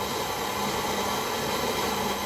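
Handheld Go System butane torch burning with a steady hiss as it holds silver molten in a small crucible, with a low steady hum underneath.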